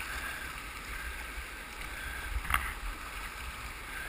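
Whitewater rapids rushing around a kayak as it is paddled through them, with the paddle splashing in the water. One sharp splashing hit stands out about two and a half seconds in.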